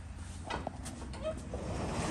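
Metal slide latch on a wooden horse-stall door clicking open, then the sliding stall door rolling along its track.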